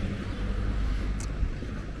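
Outdoor street background: a steady low rumble with hiss, and one brief tick about a second in.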